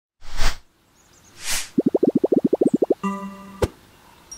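Sound effects of an animated logo intro: two short whooshes, then a quick run of about a dozen cartoon pops. These are followed by a held chime-like tone, ending in one sharp click.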